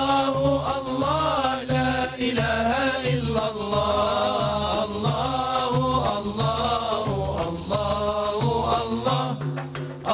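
A male voice sings an Arabic devotional chant (inshad) in a wavering, ornamented melody. Frame drums keep a steady low beat under the voice.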